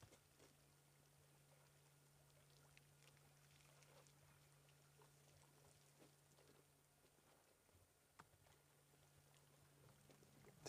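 Near silence: a faint steady low hum with scattered faint ticks, one a little more distinct about eight seconds in.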